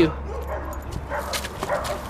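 A dog whimpering faintly, with a few light knocks.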